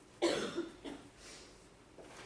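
A person coughs: a loud burst about a quarter second in, followed by a smaller one shortly after.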